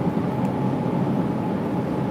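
Steady low rumbling background noise of a supermarket aisle beside open refrigerated cases, with a faint steady hum and no distinct knocks or clicks.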